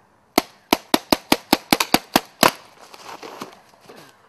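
Paintball marker firing a rapid string of about a dozen sharp shots, roughly five a second, stopping about halfway through, followed by a short stretch of softer noise.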